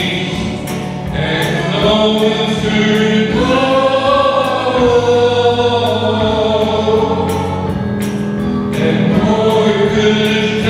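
A congregation singing a hymn together in long held notes over steady low notes.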